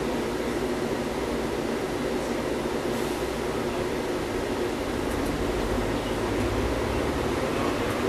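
Inside a MAZ-103.485 city bus: the engine idles with a steady drone, then revs up over the last few seconds as the bus pulls away.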